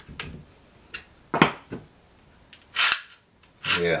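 Small metallic clicks from a screwdriver and pole-saw chain being handled, then short rasps of the saw chain being pulled by hand along its bar, the sharpest click about a second and a half in.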